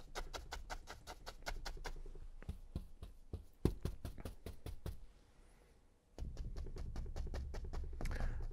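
Bristle brush loaded with thick wet oil paint tapping rapidly against a stretched canvas, about six light taps a second. The tapping stops in the middle, where there are a few separate knocks and a short near-quiet spell, then resumes near the end.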